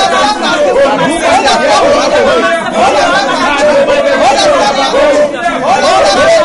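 A man and a woman praying aloud at the same time, their voices overlapping without a pause.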